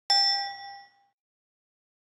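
Subscribe-button notification ding sound effect: one struck chime with several bright pitches that rings out and fades within about a second.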